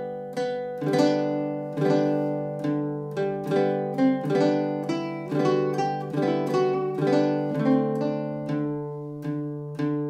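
Solo baritone ukulele, fingerpicked: plucked chords and melody notes struck about once a second, each ringing out and fading, in a slow, swaying rhythm.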